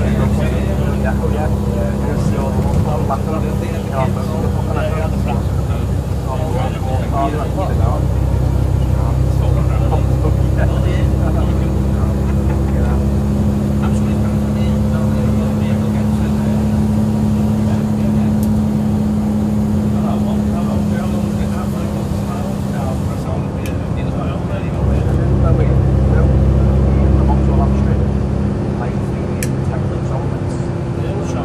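Cummins diesel engine of a Volvo Olympian double-decker bus running under way, heard from inside the upper deck as a steady low drone. It pulls louder about eight seconds in and again a few seconds before the end.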